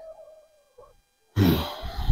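Domestic hens giving a faint, drawn-out low call that fades out. About a second and a half in, a sudden burst of rumbling noise starts, with a rising call faintly heard through it.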